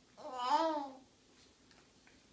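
A baby's single babbling vocal sound, under a second long, rising and then falling in pitch.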